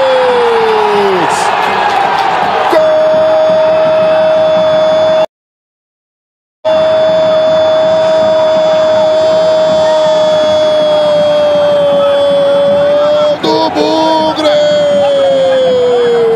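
A football commentator's long, held goal cry ("Gooool!") on one high, steady pitch. A first cry falls away about a second in, with crowd noise between, before the long cry begins; the sound drops out entirely for about a second and a half a few seconds in.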